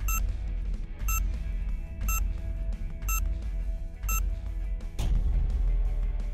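Quiz countdown timer: five short high beeps, one a second, over background music with a steady bass beat.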